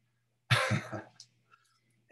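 A man's short laugh: a brief chuckle of a few quick pulses about half a second in.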